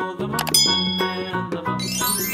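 Background music with a steady melody. About half a second in, a bright bell-like ding strikes and rings over it.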